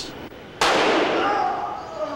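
A single handgun shot about half a second in, with a man's cry over its echo: an accidental discharge as the gun is drawn from the holster with a finger on the trigger.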